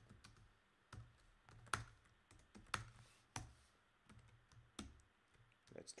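Faint typing on a computer keyboard: irregular keystrokes, a few sharper ones standing out roughly once a second.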